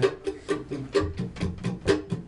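Acoustic plucked string instruments playing a quick repeated figure, about four notes a second.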